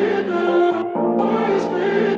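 Pop music: layered, choir-like vocals over held chords that change about once a second.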